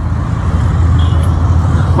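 A loud, steady low rumble with an even hiss above it, without breaks.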